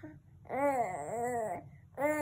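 A baby cooing: one drawn-out vowel sound that starts about half a second in and rises and falls twice in pitch.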